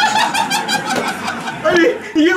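Two people laughing hard together, a quick run of short ha-ha pulses.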